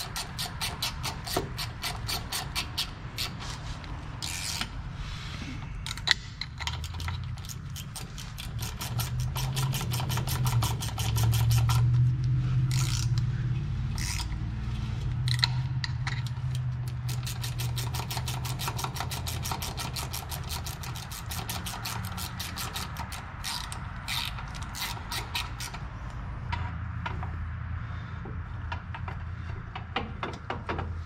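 Hand socket ratchet clicking in quick runs as the driveshaft-to-pinion-yoke bolts on a rear differential are run down. A low rumble swells up in the middle and fades again.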